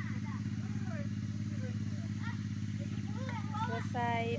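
Small ATV (quad bike) engine idling steadily at an even pitch, with no revving.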